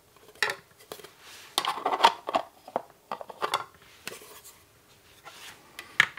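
White plastic enclosure being handled and its parts pressed together: a series of plastic clicks and scraping rubs, busiest and loudest about two seconds in, with a last sharp click at the end as the closed box is set down on the cutting mat.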